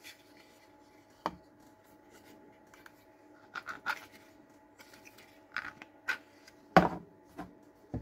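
Hard plastic clicks and knocks as a 3D-printed battery adapter and a Bosch 18V battery pack are handled and set down on a workbench, in scattered taps with the loudest knock near the end. A faint steady hum runs underneath.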